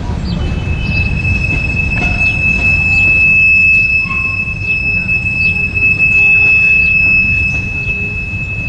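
Freight train's open-top cars rolling past, wheels rumbling on the rails, with a steady high-pitched wheel squeal that starts about half a second in and holds on.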